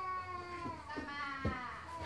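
An animal's long drawn-out cry that slowly falls in pitch, with a soft knock about one and a half seconds in.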